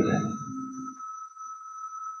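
A steady high-pitched electronic tone, with a fainter, higher tone above it, left on its own once a spoken word trails off about a second in.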